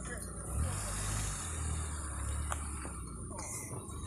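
A motor vehicle passing on a nearby road: a low rumble that comes in about half a second in and fades away near the end, with one sharp click a little past the middle.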